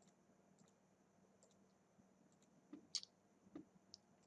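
Near silence broken by a few faint computer mouse clicks in the second half.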